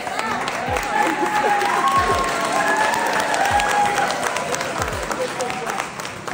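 Audience applauding, with many voices talking and calling out over the clapping. A deep thump recurs about every second and a half underneath.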